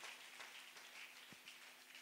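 Near silence: faint room hiss and hum, with one soft low thump about halfway through.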